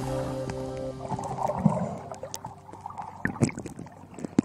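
Background music fading out by about halfway, giving way to underwater sound: gurgling water with scattered clicks and pops.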